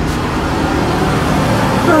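Steady background road-traffic noise, a continuous rumble and hiss with no distinct events, with a voice starting at the very end.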